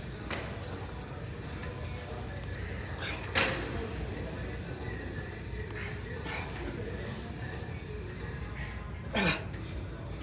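Gym room background of music and distant voices, with two brief louder sounds, about three seconds in and again near the end, during a set on a leg extension machine.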